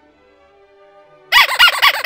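A loud warbling call starts a little past the middle and lasts about a second and a half, its pitch rising and falling quickly about six times a second.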